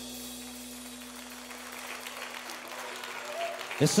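Audience applauding at the end of an acoustic rock song, while the band's last held note fades away over the first couple of seconds.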